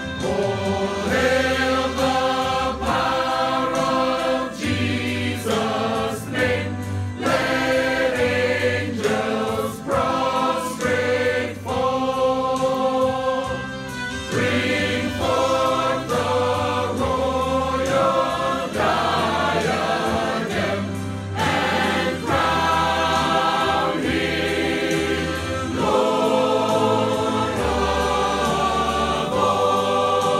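A mixed choir singing a slow gospel song in several-part harmony, holding long chords that change every second or two.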